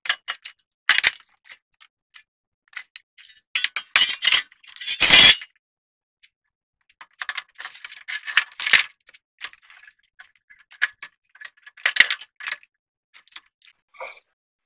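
Scattered knocks, clicks and rattles of a car's metal dashboard cross member being worked loose and lifted out, with the loudest clatter about four to five seconds in.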